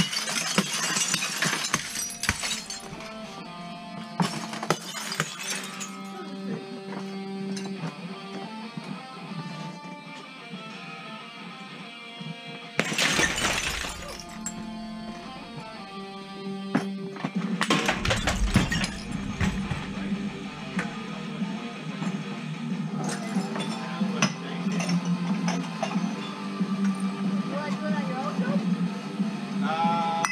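Sledgehammer blows smashing brittle objects, several loud shattering crashes over background music with guitar; the biggest come about thirteen and eighteen seconds in, the second with a heavy thud.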